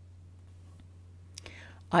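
Pause in a woman's talk: room tone with a faint steady low hum, a small click and a short intake of breath, then her voice starts at the very end.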